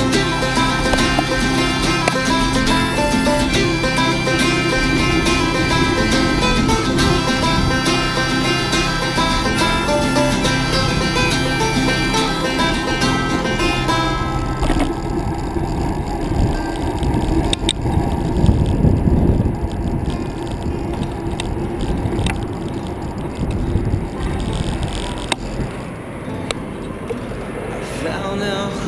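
Background music: an instrumental stretch of a country song, which thins out about halfway through.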